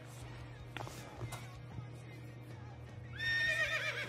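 A horse whinny: a high, wavering call starting about three seconds in and lasting about a second and a half, after a quiet stretch with only a low steady hum.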